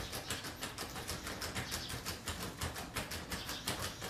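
A front-door knob being jiggled and rattled by hand: a quick run of metallic clicks, several a second.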